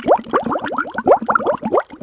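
Bubbling water sound effect: a rapid run of short bubble bloops, each rising quickly in pitch, about eight to ten a second.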